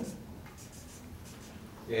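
Marker pen writing on flip-chart paper: a run of faint, short scratchy strokes.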